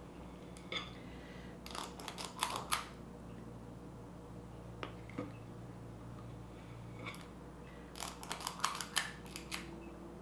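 Metal squeeze-handle cookie scoop clicking and scraping as it scoops sticky dough and releases it onto a silicone baking mat, in several short bursts of sharp clicks with pauses between.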